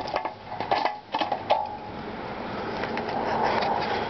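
A few metallic clicks and clinks as the chrome fuel-tank cap of a metal motorcycle tank is worked open and lifted off, followed by a steady rushing noise over the last couple of seconds.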